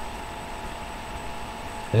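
Steady background hiss and low hum (room tone), with a faint steady tone, and no distinct event.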